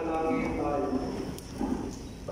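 A voice in the church: one phrase of about a second, then a shorter one near the end.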